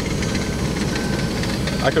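Steady low engine rumble, heard from inside a vehicle's cab. A man starts speaking near the end.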